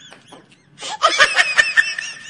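A person laughing: a few faint snickers, then about a second in a burst of high-pitched giggling, ending on a held squeal.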